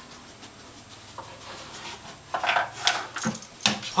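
Bed bug detection dog working close by: short bursts of sniffing, rustling and light clinks in the second half, after a quiet start.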